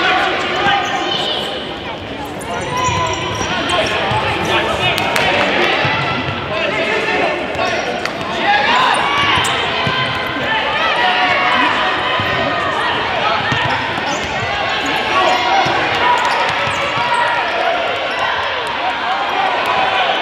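Players and spectators shouting and calling out over each other in a gymnasium, with a futsal ball being kicked and bouncing on the hardwood court.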